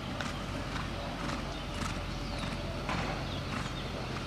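A horse's hoofbeats on a dirt arena as it canters, irregular thuds about every half second over a steady low background noise.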